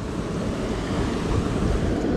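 Steady rushing of river water flowing out below a concrete weir.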